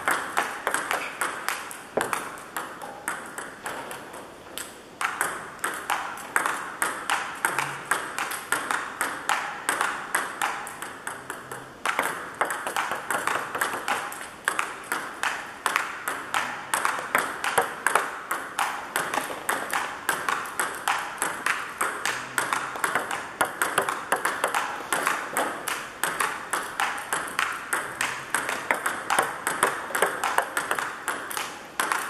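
Table-tennis ball being hit back and forth in a steady rally: a sharp click from each bat stroke and each bounce on the table, several clicks a second without a break.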